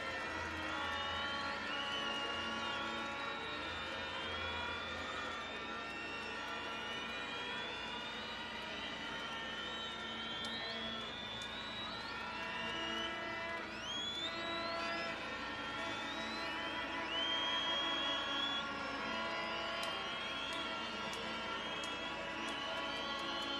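A crowd's background din with many short rising whistles scattered throughout, over a dense mesh of steady tones.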